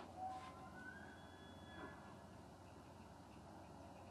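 Faint, distant bull elk bugle: a high whistle that climbs, holds for about a second, then drops away.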